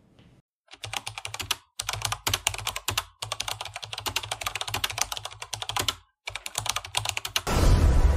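Computer keyboard typing sound effect: rapid runs of keystrokes in several bursts with short pauses between them. A loud swell of music comes in near the end.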